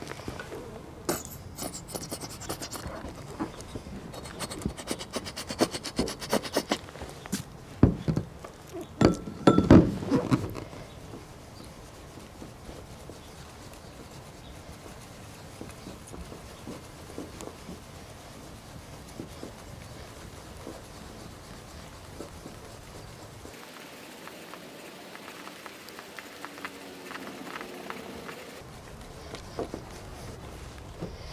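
A microfiber cloth rubbed by hand over a plastic (acrylic) camper bubble window, buffing polish in to work out scratches: a soft, steady rubbing. In the first ten seconds there are many short clicks and knocks, the loudest about eight to ten seconds in.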